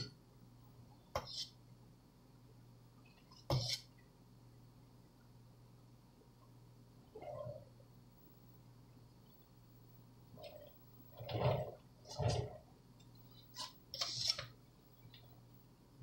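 Mostly quiet, with a faint steady hum and a few brief scrapes and taps from a cake scraper worked gently over a buttercream crumb coat on a cake turntable, most of them bunched a few seconds before the end.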